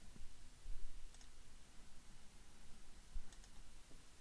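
A few faint computer mouse clicks, about a second in and again after three seconds, over quiet room tone.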